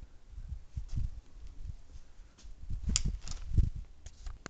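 Wind buffeting a pocket camera's microphone, with handling noise as a rifle is moved and set down. A few sharp clicks and a knock come about three seconds in.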